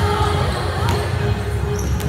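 Music with a heavy pulsing bass fills a gym during volleyball warm-up, with voices. A single sharp smack of a volleyball being struck comes a little under a second in.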